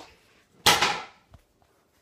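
A short, loud rush of noise right at a handheld phone's microphone, about half a second long, followed by a faint click.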